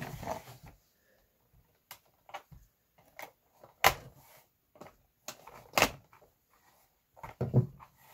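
Plastic toy packaging and a plastic action-figure vehicle being handled: a string of separate sharp clicks and knocks, the loudest about four and six seconds in, with light rustling between them.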